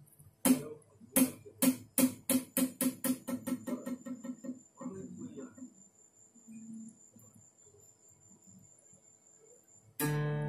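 A series of sharp knocks, each with a short low ring, coming faster and fainter over about four seconds until they die out. A faint steady high-pitched whine sounds from about three seconds in.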